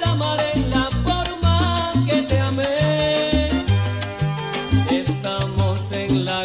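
Salsa music in an instrumental passage with no singing: a syncopated bass line moving note to note under steady percussion strokes and melodic lines above.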